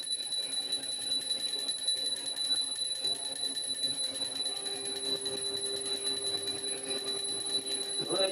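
Small brass puja hand bell rung rapidly and continuously during the aarti, a steady jangling ring with a sustained high tone.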